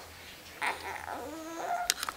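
A newborn baby whimpering and fussing in short, wavering cries, with a sharp click near the end.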